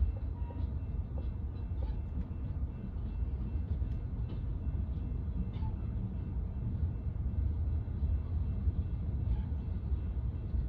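Freight train of tank cars and covered hopper cars rolling past, a steady low rumble with occasional faint clicks from the wheels and cars.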